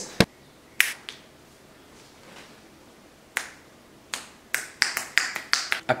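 A series of short, sharp clicks: a few spaced apart at first, then coming quickly one after another near the end.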